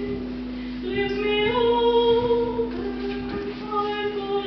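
A woman singing solo in a classical style, holding long, steady notes that step from pitch to pitch. A steady low tone sounds beneath the voice and stops about three and a half seconds in.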